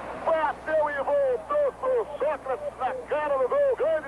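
Excited male TV commentator shouting fast in Portuguese, his voice high-pitched and broken into short rapid bursts.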